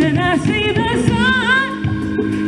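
Live band playing as a woman sings a long, wavering vocal line over a steady bass part.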